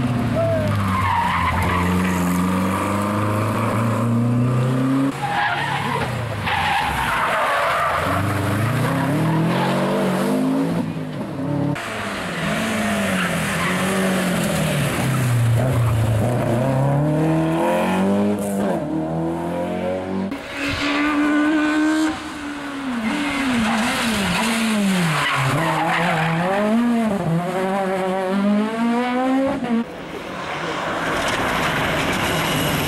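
Rally car engines revving hard, their pitch climbing and dropping repeatedly through gear changes as cars accelerate and brake past the spectators.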